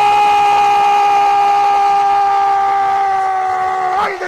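A radio football commentator's long held goal cry ('goooool'), one loud, steady shouted note sustained for several seconds and sagging slightly in pitch, breaking off about four seconds in. It marks a goal just scored.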